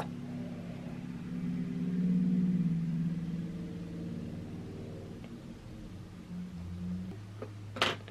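A steady low hum made of several held tones that shift in pitch now and then, swelling about two seconds in, with a sharp click near the end.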